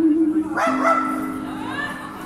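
A woman singing live ends a held note about half a second in, and a lower accompanying tone rings on and slowly fades. At the same moment a brief higher cry with several overtones cuts in, followed by a few short sliding sounds.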